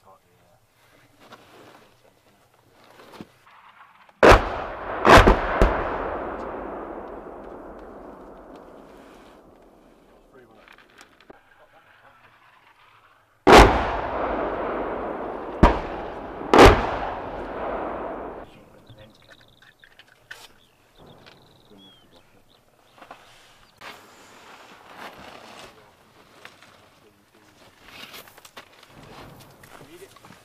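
Artillery shells exploding: a pair of sharp blasts about four seconds in, then three more starting about ten seconds later. Each group is followed by a long rolling rumble that fades over several seconds.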